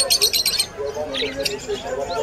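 Caged birds chirping: a rapid run of high chirps, about a dozen a second, that stops a little over half a second in, followed by lower, scattered calls against faint background voices.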